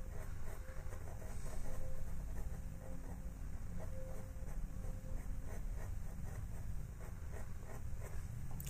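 A pastel pencil scratching on paper in many quick, short strokes, faint over a low steady background rumble.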